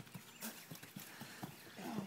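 Two men grappling on grass: faint, irregular thuds and scuffs of feet and bodies, with a short grunt near the end as one is knocked flat in a pancake block.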